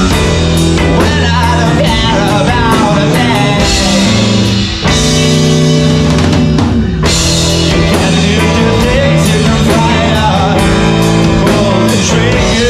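Live rock band playing: electric guitar, bass guitar and drum kit under a lead singer's voice, with a brief drop in the band about five seconds in.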